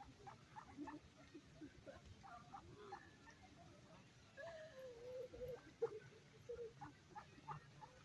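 A flock of mallard ducks giving faint, short, scattered quacks and calls.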